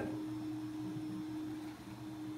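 Faint steady hum in a quiet room: one low, unwavering tone over soft background noise.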